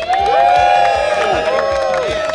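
A crowd cheering, with several voices holding long whoops over one another and a few scattered claps.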